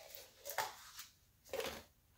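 Handling noises of a plastic paint cup and its lid: two brief scuffs, about half a second in and again after a second and a half.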